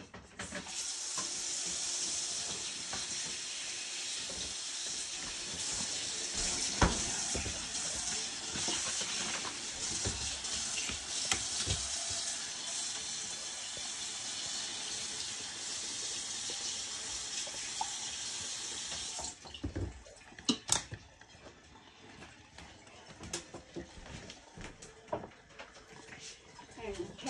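Water running from a tap into a sink as a steady rush, cut off suddenly about 19 seconds in. A few knocks and clatters are heard, one during the flow and a couple just after it stops.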